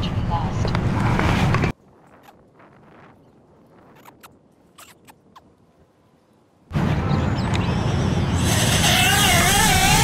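BETAFPV Air75 tiny whoop's small brushless motors and props running, then cutting off suddenly; a quiet stretch with a few faint clicks follows. About seven seconds in, the motors spin up again, their whine wavering up and down in pitch with the throttle.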